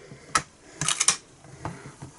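Sharp plastic clicks and taps from a Stamparatus stamp-positioning tool as its clear plate is handled and opened: a single click, then a quick cluster of clicks about a second in, and a lighter tap near the end.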